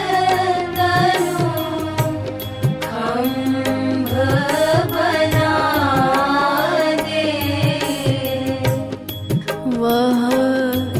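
A Hindi devotional bhajan: a voice sings long, gliding melodic phrases over a steady beat of drum strokes.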